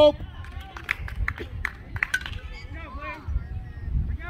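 Outdoor soccer-field ambience: distant voices calling across the pitch, a few sharp knocks in the first half, and a low wind rumble on the microphone.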